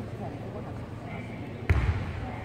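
Low murmur of voices in a large sports hall, with one heavy thud on the wooden floor about three-quarters of the way through.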